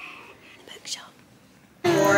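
Soft whispered speech. Near the end the sound cuts abruptly to a much louder room with music playing.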